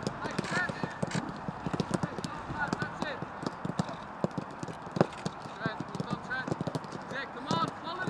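Footballs being kicked and passed on a grass pitch: a run of short, sharp thuds at irregular intervals, the loudest about five seconds in.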